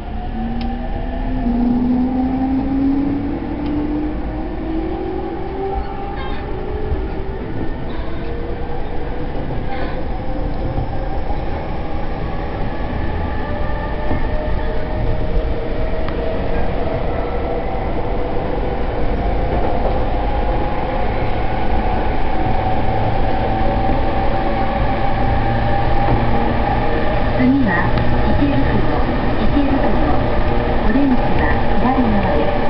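Electric commuter train heard from inside the car: the traction motors whine in a pitch that climbs steadily for the first ten seconds or so as the train gathers speed, then holds. A steady rumble of wheels on rail runs beneath it.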